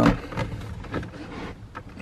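Hard plastic console side trim panel being worked into its track by hand: a few light knocks and scrapes of plastic on plastic.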